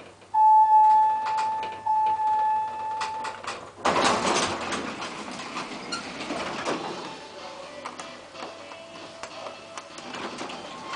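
A KONE lift's electronic signal: one steady mid-pitched beep about three seconds long with a brief hitch partway through, followed about four seconds in by the lift doors sliding open, with a burst of noise that then fades to a steady background.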